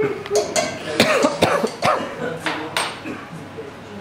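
A handful of sharp clinks and knocks of glassware being handled in a bowl of liquid nitrogen, mixed with indistinct voices and chuckling in the first couple of seconds.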